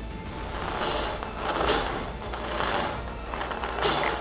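Plastic lottery balls tumbling and rattling inside a hand-cranked brass wire bingo cage as it turns, a continuous clattering that swells about a second in, again midway and near the end.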